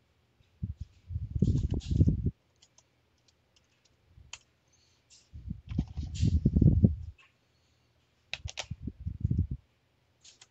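Typing on a computer keyboard in three quick runs of rapid keystrokes, each run a close string of dull thumps, with a few separate clicks in between.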